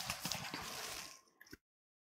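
Faint room noise with a few light knocks and taps, then one click before the sound cuts off suddenly to dead silence.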